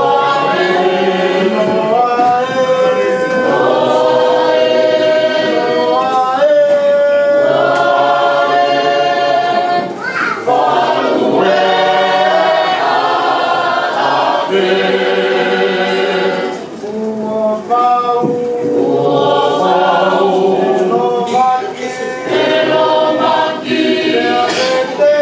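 A Tongan church choir of mixed voices singing a hymn in parts, unaccompanied, in long held notes. The singing dips briefly between phrases about ten and seventeen seconds in.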